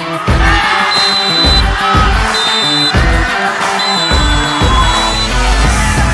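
Upbeat background music with a steady drum beat.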